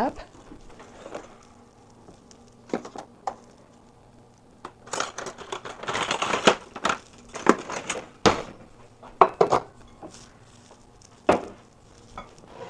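Kitchenware being handled: a run of clinks, knocks and rustling over about five seconds from the middle on, then one sharp knock near the end.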